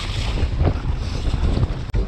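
Wind buffeting an action camera's microphone at riding speed, over the low rumble of a downhill mountain bike running down a loose woodland trail. The sound drops out for an instant near the end.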